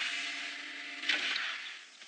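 Science-fiction sliding door sound effect: a hissing whoosh with a steady low hum under it, surging again about a second in and then fading out.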